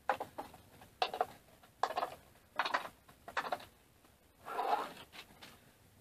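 Hand screwdriver backing screws out of the spoilboard on a 3018 Pro CNC's aluminium table: a short scraping rasp with each twist, about six in a row, roughly one a second.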